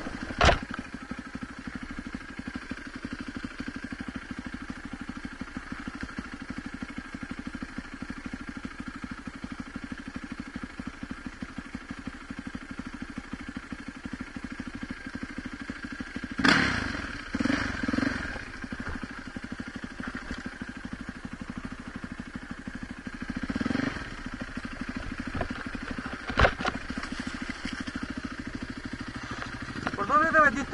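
Enduro dirt bike engine idling steadily, with a few brief louder bursts about halfway through and again later on.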